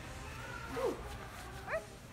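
A person's voice making a few short, wordless squeaks that slide in pitch: a short falling one a little before the middle and a quick rising one near the end.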